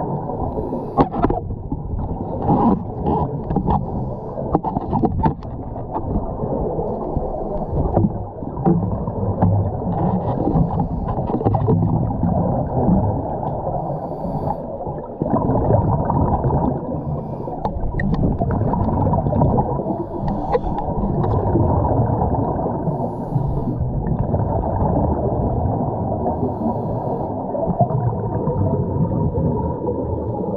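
Underwater sound of a scuba-diving pool as picked up by a camera in a waterproof housing: continuous muffled rumbling and gurgling of water and diver's bubbles, with scattered sharp clicks and knocks.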